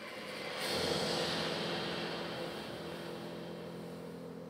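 Quiet opening of a contemporary chamber piece for flute and daegeum with ensemble: a breathy, airy sound swells about a second in and holds, over faint held low tones.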